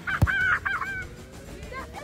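A football struck hard in a penalty kick: one sharp thud about a quarter second in. It is followed at once by a short cry of wavering pitch lasting under a second.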